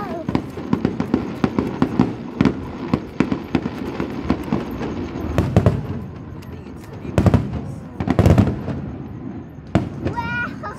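Aerial fireworks display: a dense run of crackling pops and bangs from bursting shells, with the heaviest booms coming in clusters about seven and eight seconds in.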